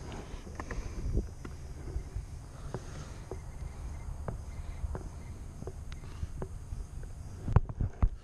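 Light, scattered clicks and taps of fishing tackle being handled: a soft plastic worm being rigged on a hook with the rod in hand, over a steady low rumble. A louder knock comes near the end as the baitcasting reel is taken up.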